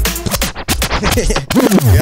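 Grime instrumental being scratched and spun back on a DJ deck's jog wheel, the track warping in quick back-and-forth sweeps that fall in pitch near the end. It is a rewind, pulling the tune back after the MC forgot his lyrics.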